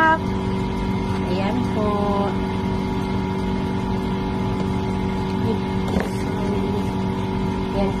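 A steady machine hum with several constant tones runs underneath throughout, with a sharp click about six seconds in.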